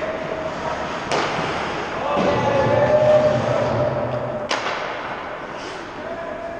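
Ice hockey play in a large, echoing rink: two sharp impacts, about three and a half seconds apart, ring through the hall. Between them come distant players' shouts.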